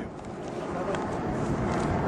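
Outdoor field noise: a steady rumbling hiss on the microphone with faint voices in the background.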